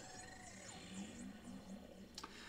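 Faint electronic jingle of short stepping notes from an Amazon Echo smart speaker, playing out after Alexa's Konami-code easter-egg reply.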